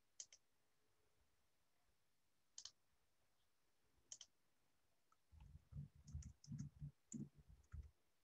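Faint clicking at a computer over near silence: a few sharp double clicks spaced a couple of seconds apart, then a quick run of soft low thuds and clicks in the last three seconds, as of a mouse and keyboard in use.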